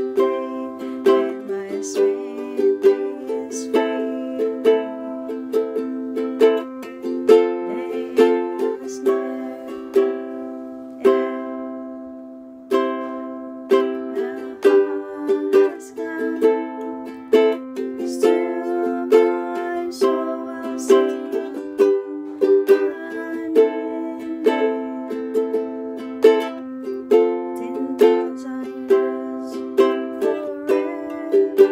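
Ukulele strummed in chords in a steady rhythm, with one chord left to ring and fade about halfway through before the strumming picks up again.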